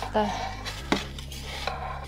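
A perforated metal turning peel scraping and clicking on the oven's stone floor as a pizza is turned, with one sharp click about a second in.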